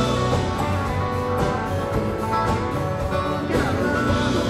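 Live country band playing, with guitar over bass and drums.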